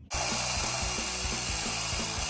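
Chop saw with an eighth-inch-thick metal-cutting blade running steadily through the steel tube of a transmission crossmember.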